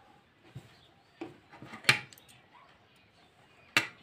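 Handling noise from cloth and small objects being moved about on a work table: a few sharp taps and clicks over a quiet background, the loudest about two seconds in and another near the end.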